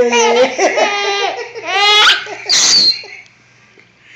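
A baby girl laughing and squealing in a high voice, with a rising squeal about two seconds in, ending in a short breathy burst and then falling quiet.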